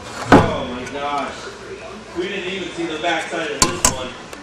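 Indistinct voices, with one sharp knock about a third of a second in and two quick clicks near the end.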